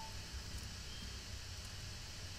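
Faint room tone: a steady low hum and hiss from the recording, with no distinct sound event.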